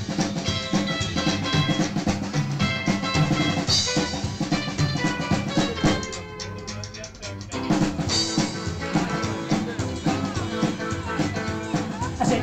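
Live band playing an instrumental passage of a song, with drum kit (snare and bass drum), bass and guitar. The music thins to a quieter moment about six seconds in, then the full band comes back about a second and a half later.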